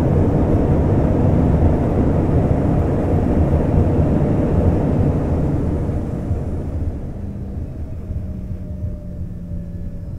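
Cabin noise of an Embraer ERJ-135 regional jet on its landing rollout: a loud roar of the rear-mounted turbofans and the rolling wheels. The roar fades about two-thirds of the way through as the jet slows, leaving a steadier, quieter engine hum.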